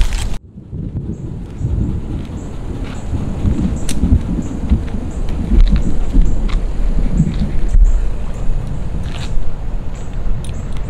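Wind buffeting the microphone of a handheld camera, an uneven low rumble, with a few sharp clicks of handling.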